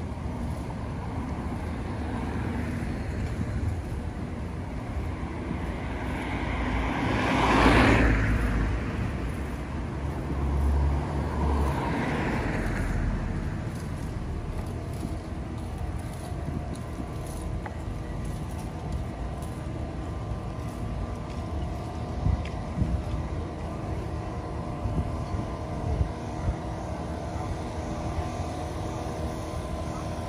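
Cars driving past on a city street: one swells up and passes loudest about eight seconds in, and a second, quieter one follows about four seconds later, over steady low street noise.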